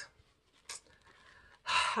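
A woman's audible breath, a sigh-like intake, just before she speaks again near the end, after a mostly quiet pause broken by one brief soft noise.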